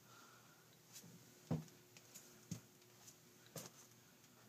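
Near silence with a few faint, scattered knocks, the loudest about one and a half seconds in.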